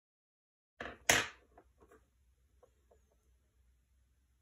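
Silence, then about a second in two sharp knocks followed by a few light clicks: coloured pencils being set down and picked up on a tabletop.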